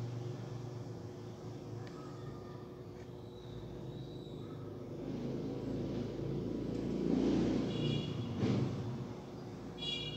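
Low background rumble of a passing vehicle, swelling to its loudest about seven to eight seconds in and then easing off, with short high-pitched chirps near the end.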